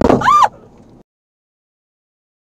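One sharp thunk as a deer runs into the side of a pickup truck's door, heard from inside the cab, followed at once by a person's high cry of alarm that rises and falls in pitch. The sound cuts off suddenly about a second in.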